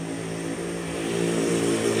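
A motor droning steadily at an even pitch.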